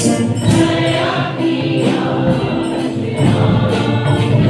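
Mixed church choir of women and men singing a worship song in unison, over a steady rhythmic percussion beat.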